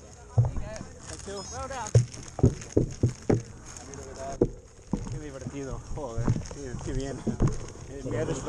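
People talking, their voices mixed with repeated sharp knocks and rattles from a mountain bike rolling slowly over rough dirt.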